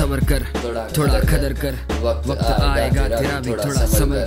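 Hip hop music: a man rapping over a beat with a deep, steady bass.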